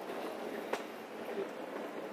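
Steady city street background noise, a hum of distant traffic, with a faint click about three quarters of a second in.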